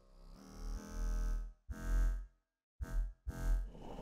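Monophonic synth bass in FL Studio sounding single notes one at a time, about four short notes with gaps between them, as a bass line is picked out note by note in the piano roll.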